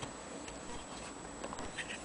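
Faint, scattered light clicks and ticks of small metal parts of an HMV No. 4 gramophone sound box being handled and fitted by fingers.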